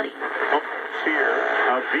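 AM talk-radio speech from a Packard Bell transistor radio's speaker, the sound cut off at the top, shifting from one station to another as the dial is turned.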